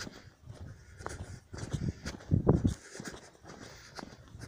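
A hiker's footsteps on a stony mountain path at a brisk pace: irregular scuffs and crunches, with a louder cluster about two and a half seconds in, and his breathing.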